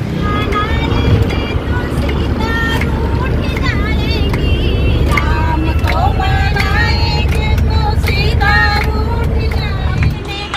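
Passengers' voices, chattering and calling out, over the steady low rumble of a minibus running on the road, heard from inside the cabin.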